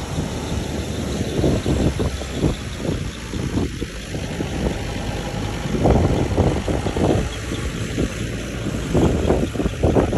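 Farm tractor's diesel engine running as it drives past towing a trailer, loudest about six seconds in and again near the end, with wind buffeting the microphone.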